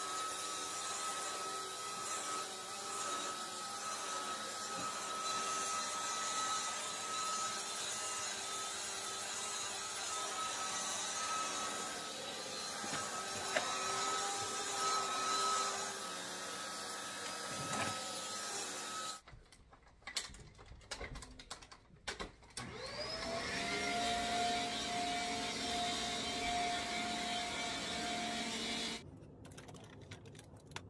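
A Shark bagless upright vacuum cleaner running steadily with a constant whine, then cutting off about two-thirds of the way through. A few seconds later its motor starts again with a rising whine that settles into a steady pitch, and it stops shortly before the end.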